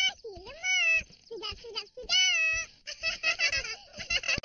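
High-pitched cartoon child voices making wordless sounds: two drawn-out calls that glide up and down in pitch, then quick chattering syllables near the end.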